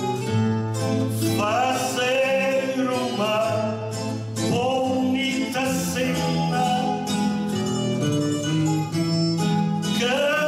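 A man sings a cantoria ao desafio verse into a microphone, in phrases of about two seconds each. Plucked acoustic guitars accompany him with a steady strummed backing.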